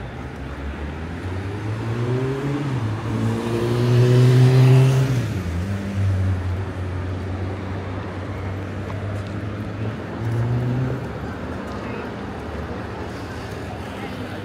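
A car engine accelerates past on a city street, rising in pitch and loudest about four to five seconds in. A steady low engine hum of traffic follows, with a brief swell near the ten-second mark.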